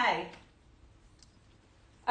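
A woman's spoken word trails off, then it goes nearly quiet apart from a few faint clicks as a leather Hermès Kelly handbag is lifted down from a shelf.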